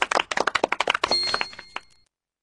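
Small group of hands clapping rapidly, fading out near the end. A high steady ringing tone joins about a second in.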